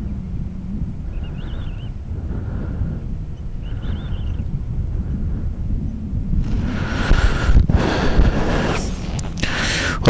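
Wind buffeting an outdoor microphone: a steady low rumble that turns gustier and stronger from about six and a half seconds in.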